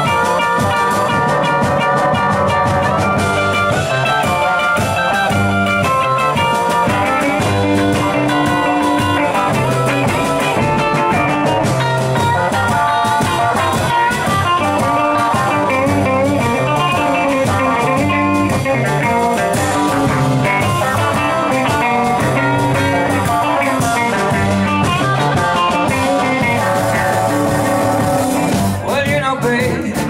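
Live blues band playing an instrumental passage: two electric guitars over upright double bass and drum kit, with no singing.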